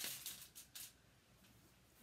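A few brief soft rustles of hands picking up a faux ice cream scoop in the first second, then near silence.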